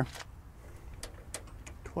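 A few faint, light clicks, scattered and irregular, over a quiet background.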